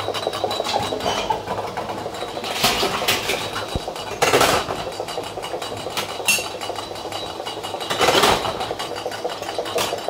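A 0.33 l returnable glass bottle spinning in place on the conveyor belt of an empties-return bottle table, rattling rapidly against the bottles packed around it over a steady machine hum. It spins because it stands only partly on the moving belt and is not clamped tight by the other bottles. A few louder glassy knocks come through, the clearest about four and eight seconds in.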